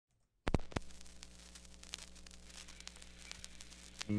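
Idle noise of a high-gain electric guitar rig (7-string guitar into a Zoom G5n amp simulation): a few sharp clicks about half a second in, then a steady low hum with faint hiss and scattered small ticks.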